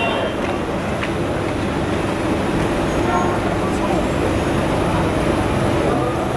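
Steady low rumble of background noise with indistinct voices mixed in.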